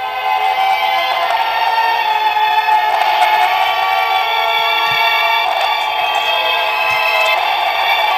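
Light-up Disney castle Christmas ornament playing a tune through its small built-in speaker, thin and without bass.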